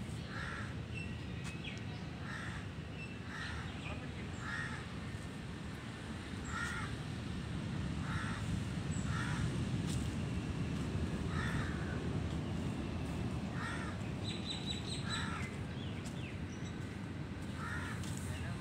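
Short, harsh bird calls repeated about once a second, over a steady low rumble that grows louder in the middle.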